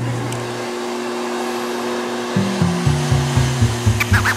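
Pet drying box's blower running with a steady whoosh of air. Background music with a stepping bass line comes in a little past halfway.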